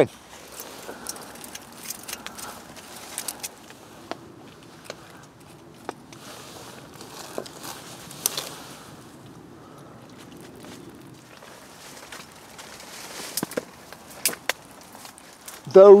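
Faint crackling and scattered sharp snaps of burning birch bark tinder on top of a small wood-burning camp stove, with a brief rise in hissing about six to eight seconds in.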